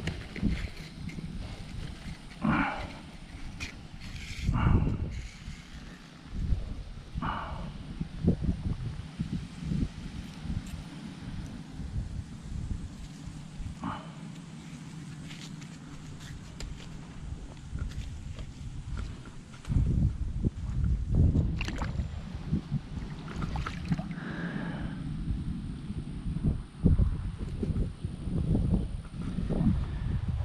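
Wind buffeting the microphone, an uneven low rumble that grows heavier about two-thirds of the way through. Over it are scattered short rustles and knocks from handling a rope fish stringer on dry grass.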